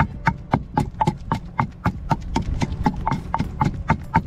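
Wooden pestle pounding garlic and salt in a stone mortar: a steady run of sharp knocks, about four a second.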